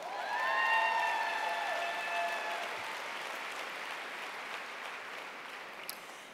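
Audience applauding, with a few voices holding a call over the clapping at first. The applause swells in the first second, then slowly dies away.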